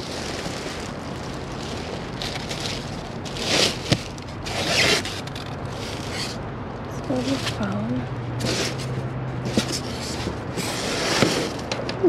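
Thin plastic sheeting and bags crinkling and rustling as gloved hands dig through trash, in several short bursts, with a sharp click a little under four seconds in.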